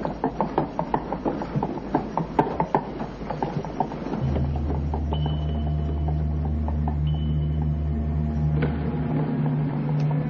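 A child's plastic tricycle's wheels clattering as it is pedalled, with rapid irregular clicks. From about four seconds in this gives way to a steady low rumble under a sustained, held musical drone.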